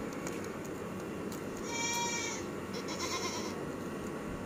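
Two high-pitched bleats from a young animal: a clear call about two seconds in, then a rougher one just after. A steady background hiss runs under them.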